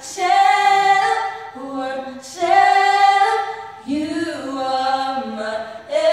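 Two female voices singing together a cappella, with no instruments, in long held phrases and short breaths between them.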